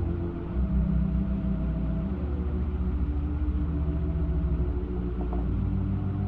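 Soft sustained organ chords, the held notes changing every second or two, on an old recording with a low background hum.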